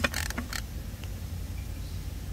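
Steady low background hum, with a sharp click right at the start and a few faint knocks in the first half second.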